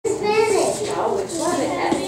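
Children talking in high, lively voices.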